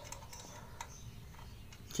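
A few faint, scattered metallic ticks of a hand wrench being set on the valve-adjuster nut at the cylinder head of a small motorcycle engine.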